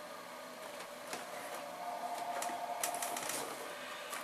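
Scattered light clicks and rustling of boxed and bottled beauty products being handled and picked out of a shipping box, busiest about a second in and again near three seconds.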